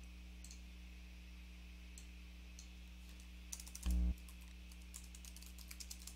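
Computer keyboard typing, a quick run of keystrokes in the second half after a few scattered clicks, over a faint steady electrical hum. A short low thump about four seconds in is the loudest sound.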